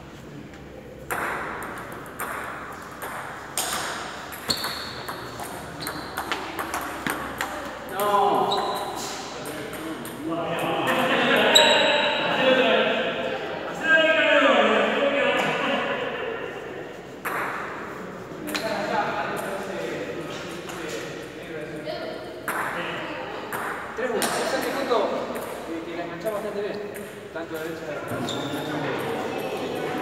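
Table tennis rallies: a celluloid-type plastic ball clicks sharply off rubber-faced paddles and bounces on the table in quick alternating hits. The runs of clicks come near the start and again through the second half, with a break for voices in between.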